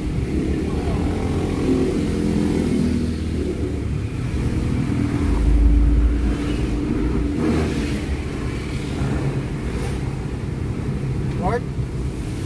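BMW X5 E53 under way, engine and road noise heard from inside the cabin. The car pulls harder with a louder low surge about five to six seconds in. Its freshly rebuilt automatic transmission has shifted up from third to fourth gear by the end.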